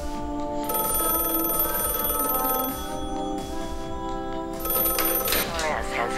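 Desk telephone bell ringing: one ring of about two seconds, then a second, shorter ring a couple of seconds later, over background music.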